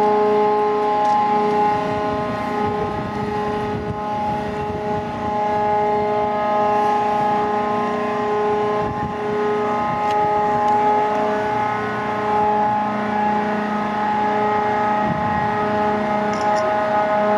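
Crane and winch machinery of the grab dredger Gosho running, a steady hum of several held tones, while its giant grab bucket is worked at the water surface.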